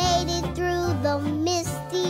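Children's cartoon song: a child's voice singing held, wavering notes over a bass line and backing instruments.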